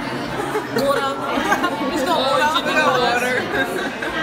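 Chatter of many people talking at once around the tables of a busy dining room, in a large reverberant room.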